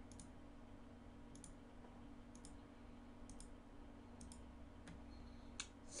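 Computer mouse button clicking, single sharp clicks about once a second, over a faint steady hum.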